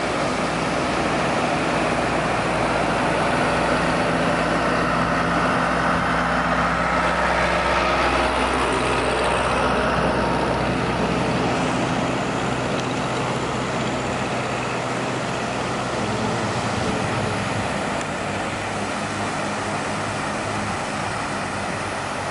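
Pacific surf washing onto a sandy beach, a steady rushing noise that swells about a third of the way in and eases a little later, with a low steady hum underneath.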